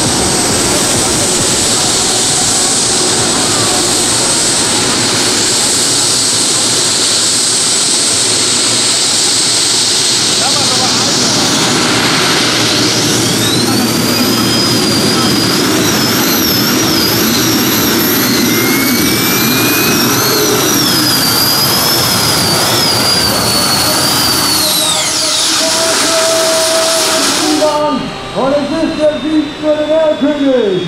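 Gas-turbine engines of a custom pulling tractor, a loud steady high whine that climbs and wavers in pitch partway through as the turbines are run up under load on the pull. The whine falls away shortly before the end.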